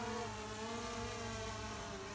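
DJI Phantom 4 Pro V2 quadcopter's propellers and motors buzzing in flight while it carries a full-size life preserver on a cord. The pitch of the hum drifts slightly up and down as the drone holds against the wind.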